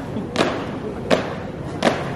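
A marching squad's shoes stamping on pavement in unison, three sharp, evenly spaced footfalls in a slow ceremonial marching step.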